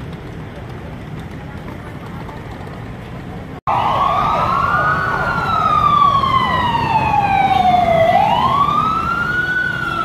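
Low street traffic noise, then after a sudden break a fire engine siren wailing, its pitch rising and falling slowly twice.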